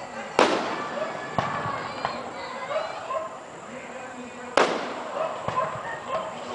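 Aerial firework shells bursting: two loud booms about four seconds apart, with lighter cracks in between, over the talk of a watching crowd.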